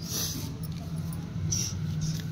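Rustling and rubbing of cloth against a handheld phone's microphone, in two short bursts, near the start and about one and a half seconds in, over a steady low hum.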